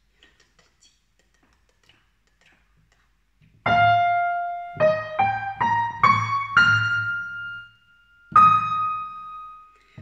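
A piano plays a short phrase of single notes after a few seconds of near silence with faint clicks. It starts with one held note, climbs in a quick rising run to a held higher note, and adds one more note near the end.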